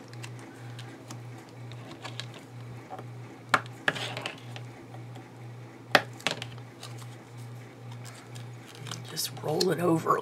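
Light paper handling as a small paper book cover is folded and pressed flat with a bone folder on a cutting mat, with two sharp taps a few seconds apart. A steady low hum runs underneath.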